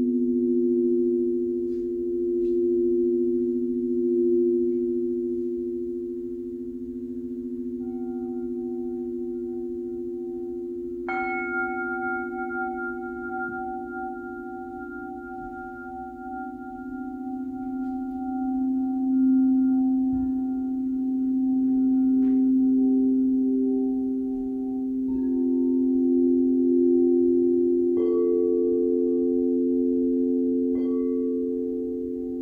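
Frosted quartz crystal singing bowls ringing in several sustained, overlapping tones that swell and fade as they are played. Higher notes join in: a bowl is struck about eleven seconds in, adding a brighter ring, and new notes enter twice more near the end.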